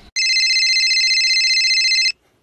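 Electronic telephone ring: a high, rapidly trilling tone that runs for about two seconds and cuts off suddenly.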